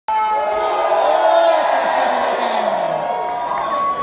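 Crowd cheering and shouting, many voices at once, loud and steady, starting abruptly as the recording begins.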